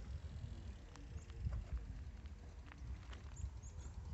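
Faint, irregular footsteps crunching on gravel, over a low rumble.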